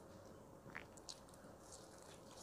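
Near silence, with a few faint mouth clicks of chewing soft toasted bread.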